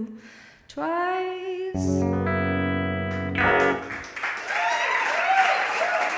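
A last sung note over an electric hollow-body guitar, then a final strummed chord left ringing for about two seconds as the song ends. Audience applause with a few cheers breaks out about four seconds in.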